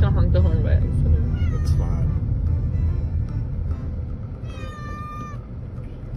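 Domestic cat meowing several times over the steady low rumble of a moving car's cabin. The last meow, about three-quarters of the way in, is long and nearly level.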